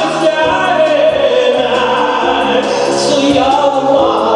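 A male vocalist singing a Tatar song into a handheld microphone over instrumental backing, amplified through the hall's sound system.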